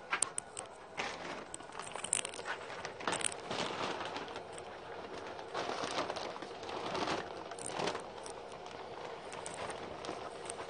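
Rustling and crinkling of a plastic sack of wood pellets being handled, with scattered small clicks.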